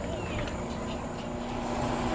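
A steady low background rumble with no voices, with a faint steady hum coming in about two-thirds of the way through.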